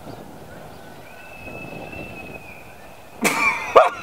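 Quiet outdoor background with a faint steady high tone. About three seconds in, a person's voice breaks in loudly in short, repeated bursts.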